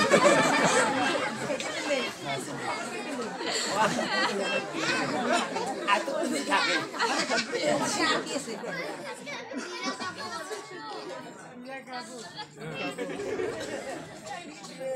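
Speech: several voices talking over one another, louder in the first half and quieter after that.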